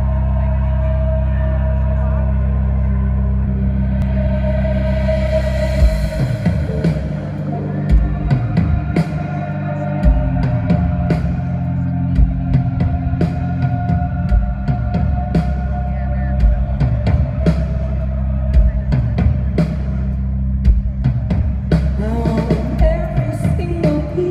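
Live concert music in an arena: a sustained low drone with long held notes, then about six seconds in a drum beat and bass come in and keep a steady rhythm.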